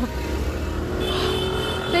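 Street traffic rumbling steadily, with a steady high-pitched tone joining about a second in.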